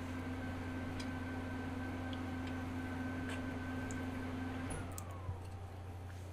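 Scattered faint computer keyboard keystrokes over a steady electrical hum with a high whine; about five seconds in the hum stops and the whine falls away in pitch.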